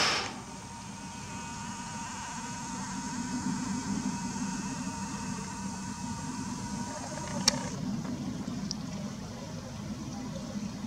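A steady low mechanical rumble with a thin high hum over it. A sharp click comes about seven and a half seconds in, and the high hum stops there while the rumble goes on.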